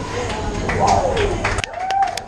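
Roller-coaster train rumbling through a dark tunnel, with riders' voices calling out over it; the rumble drops away suddenly near the end.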